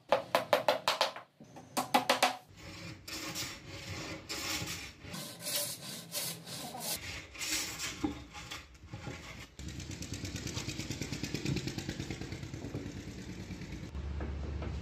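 A hammer taps quickly on a laminate-faced plywood sheet for the first couple of seconds. Then a hand plane shaves the edge of the upright plywood panel in repeated rasping strokes, which quicken into a fast, even run near the end.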